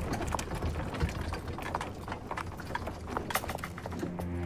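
Horses' hooves clip-clopping on stone paving as a horse-drawn carriage comes in: a quick, uneven run of several clops a second over a low steady rumble.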